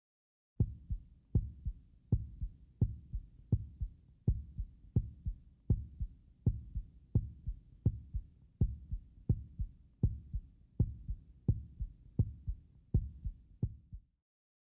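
A steady heartbeat sound effect: paired low lub-dub thumps, about 85 beats a minute, starting about half a second in.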